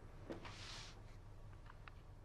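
Faint handling sounds of small objects in a quiet room: a soft knock, a short rustle, then two small clicks near the end.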